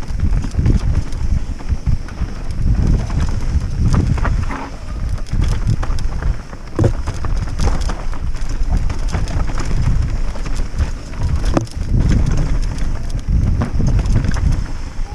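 Mountain bike riding fast down a rocky trail: tyres rolling over rock and dirt, with frequent sharp knocks and rattles from the bike over the bumps and a heavy wind rumble on the microphone.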